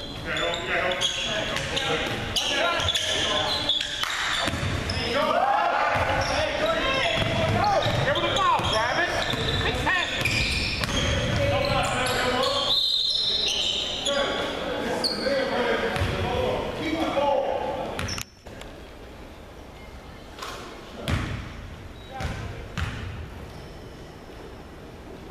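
Basketball game in an echoing gym: ball bouncing, sneakers on the hardwood and players shouting, with a short whistle-like tone about 13 seconds in. Just after 18 seconds the noise drops suddenly to a quieter stretch with a few ball bounces.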